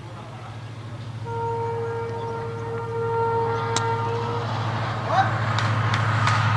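A horn sounds one long steady note for about three seconds over a low rumble that grows steadily louder. A single sharp click comes partway through.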